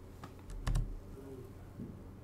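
A few faint clicks close together in the first second, keyboard-like, with a soft low thump among them.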